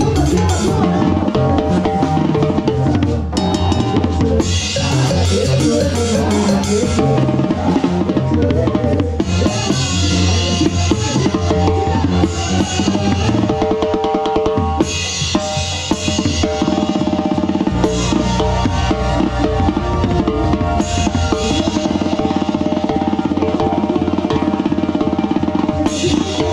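A set of tarolas (tuned snare drums) played up close with fast rolls and accents, with cymbal crashes in stretches, over live band music with a strong bass line.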